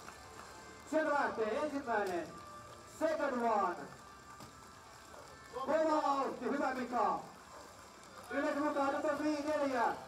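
Four long shouted yells, one every two to three seconds, as the heavy sacks are swung and thrown over the bar one after another.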